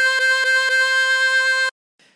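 Diatonic harmonica blowing hole 7: the note C played four times in quick repetition, the last held. It cuts off sharply just before two seconds.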